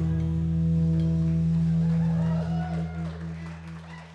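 A band's final chord ringing out on acoustic guitar, mandolin and electric bass, held steady and then fading away from about two and a half seconds in.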